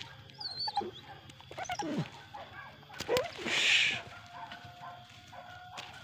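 Hunting dogs yelping and barking in short, scattered calls, with a brief rush of noise a little past three seconds in.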